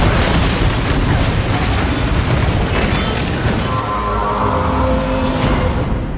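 Loud explosion as a wooden trestle bridge is blown apart, its heavy rumble running on under music. Held musical notes rise out of the din from about three and a half seconds in, and the sound starts to fade at the very end.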